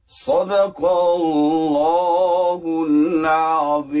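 A man reciting the Qur'an in the melodic, drawn-out style, with long held notes that waver in pitch. The voice sets in just after a silence and breaks briefly twice.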